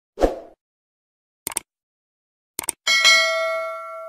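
Subscribe-button animation sound effects: a short pop, two quick double clicks, then the loudest sound, a notification-bell ding that rings on with several pitches and fades out.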